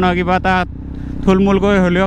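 A man talking over the steady low drone of a KTM Duke 390's single-cylinder engine cruising at about 45 km/h; the engine is heard alone for about half a second in the middle, between phrases.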